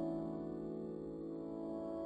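Soft, slow piano music: a sustained chord held and slowly dying away, with no new note struck.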